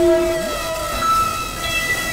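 Experimental synthesizer drone: several held tones layered over a noisy wash, with a short gliding tone partway through.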